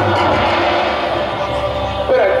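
Live jas folk music from a stage band, with heavy low drumming under the instruments.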